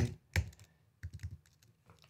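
Computer keyboard keystrokes: one sharper key click about a third of a second in, then a few lighter taps around the one-second mark.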